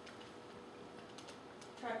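A few faint, short clicks over quiet room tone; a woman starts speaking near the end.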